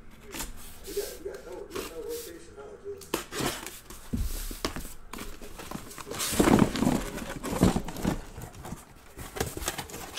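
Cardboard shipping case being cut open with a box cutter, then its flaps pulled back: irregular scraping and ripping of cardboard, loudest about six to eight seconds in.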